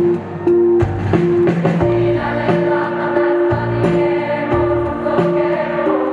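Rock band playing live: a repeated bright note over bass and drum hits about every 0.8 seconds, with a sustained, choir-like chord swelling in about two seconds in.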